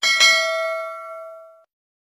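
Notification-bell sound effect for a subscribe animation: a bell ding, struck again a moment later, ringing and fading before cutting off after about a second and a half.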